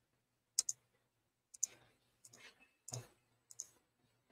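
A handful of short, sharp clicks at irregular intervals, some in quick pairs, over a faint steady low hum.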